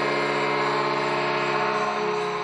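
Arena goal horn sounding a steady, sustained chord of several held pitches, marking a goal just scored.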